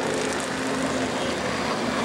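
Stock car engines running in a steady, even drone.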